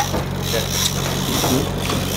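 Steady low hum of the boat's engine running, over a haze of wind and sea noise on deck.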